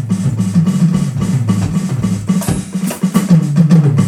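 Jazz drum kit with cymbals and drums, over an electric bass playing a line of low notes that change every fraction of a second.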